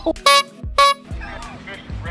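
Two short, loud horn-like toots about half a second apart, each a flat single pitch, over background music.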